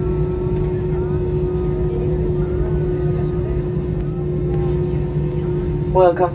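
Airbus A320-family jet airliner cabin noise while taxiing: a steady engine hum with a constant low whine over a low rumble.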